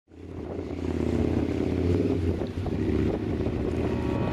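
A boat's engine drones low and steady, mixed with wind and water sound, fading in from silence.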